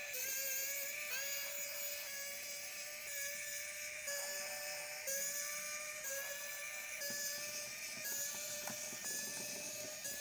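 Small motor of an electric precision screwdriver whining steadily as it backs out small Torx screws one after another. The whine breaks and restarts about once a second, with a slight change in pitch each time.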